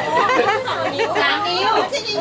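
Several people talking over one another in lively conversation, with some laughter.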